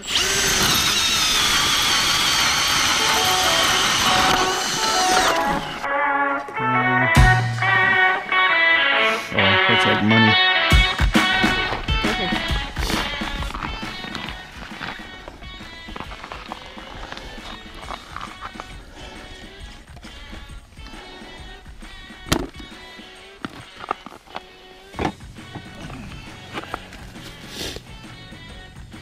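Cordless drill turning an ice auger, its motor whining loudly under load as it bores through about four inches of lake ice, stopping abruptly after about five seconds. Background music with guitar takes over for the rest, with scattered handling clicks.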